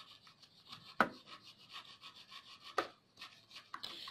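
A rubber eraser rubbing back and forth over the gold edge contacts of a desktop RAM module in faint repeated strokes, with two sharp clicks, one about a second in and one near three seconds. It is scrubbing off the carbon build-up on the contacts that is blamed for a PC that powers on but gives no display.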